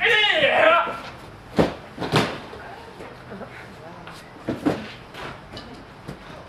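A loud yell lasting about a second, then a series of heavy thumps of bodies landing on gym mats laid over a hollow raised platform: two about a second and a half and two seconds in, and more about four and a half to five seconds in, during a knife-defence takedown.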